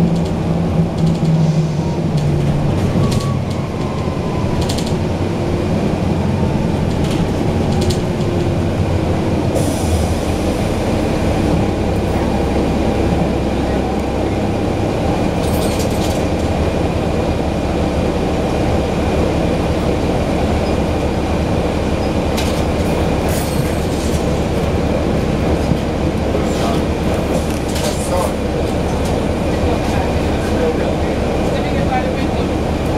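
Inside a transit bus near the rear, where the 2011 NABI 416.15's Cummins ISL diesel engine sits, running with a steady loud rumble. A strong engine tone in the first few seconds drops away, and short rattles and clicks from the cabin come and go throughout.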